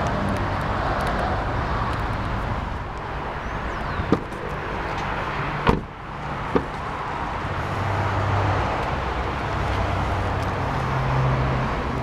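Supercharged 6.2-litre LS3 V8 of a 2010 Camaro SS, just remote-started and idling steadily through its stainless steel dual exhaust. A few sharp clicks come about four to seven seconds in as the driver's door is unlatched and opened.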